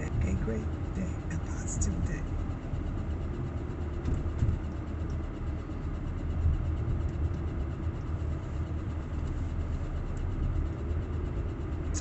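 Steady low rumble of a car running, heard inside the cabin.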